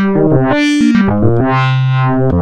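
Ableton Operator FM synthesizer patch playing: a held low note, then a quick run of shorter notes, then a held note again. Its brightness swells and fades about once a second under LFO modulation.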